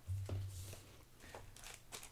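Faint handling of Pokémon trading cards and a foil booster pack: a few soft clicks and rustles, with a brief low hum near the start.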